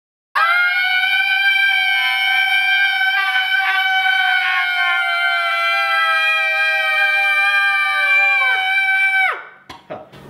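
Two people screaming together in one long, high-pitched scream. The pitch sinks slowly and then drops away as the voices give out near the end.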